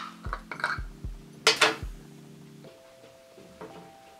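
A few short knocks and clinks from a glass jar of maraschino cherries and a ceramic bowl as cherries are added to an ice cream sundae, the loudest about a second and a half in, over soft background music.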